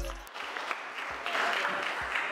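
A crowd clapping, with the end of a rap track cutting off just after the start.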